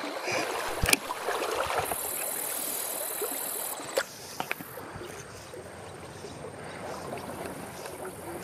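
Shallow creek water running over stones, with a sharp click about a second in and another about four seconds in.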